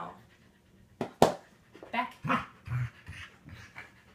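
A Pembroke Welsh corgi panting with its mouth open, broken by a sharp click about a second in.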